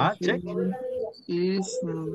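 A man's voice making drawn-out hums and vowel sounds held at a steady low pitch, in two stretches broken by a short pause about halfway through.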